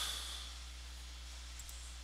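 Quiet room tone with a steady low hum and faint hiss; a soft breath fades out at the start.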